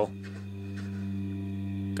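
Spooky, ethereal film sound design: a sustained low drone on one steady pitch with its overtones, slowly swelling.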